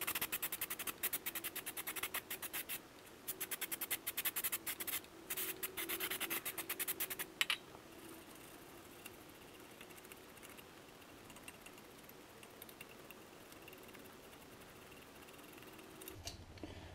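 Toothbrush bristles scrubbing a dusty brake caliper clean, rapid back-and-forth strokes in several quick runs. The scrubbing stops about seven and a half seconds in, and only faint sounds follow.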